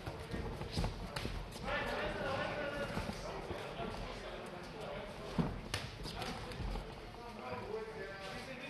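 Heavyweight boxers' gloved punches landing and feet shuffling on the ring canvas, heard as scattered sharp smacks and thuds. The loudest smacks come a little past five seconds in.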